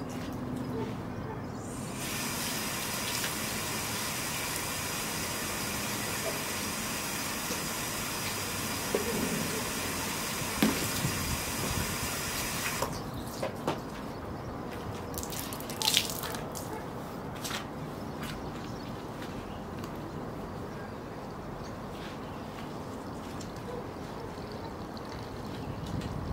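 Water running in a steady hiss that starts about two seconds in and cuts off about thirteen seconds in, followed by scattered knocks and clicks.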